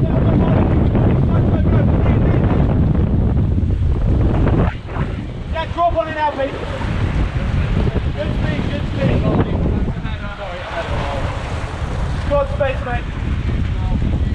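Wind buffeting the microphone aboard a sailing racing catamaran, with water rushing past; the heavy low rumble drops about five seconds in. Brief crew calls come through twice.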